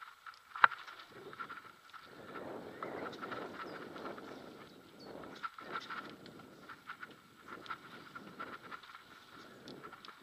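Mountain bike descending a dirt forest trail: tyres rolling over dirt and dry leaves, with the bike rattling and clicking over bumps. A single sharp knock about half a second in is the loudest sound.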